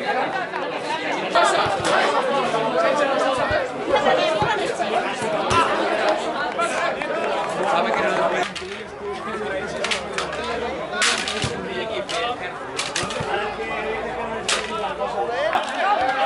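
Several voices calling out and chattering across an outdoor football pitch, with no clear words, and a few sharp knocks in the second half.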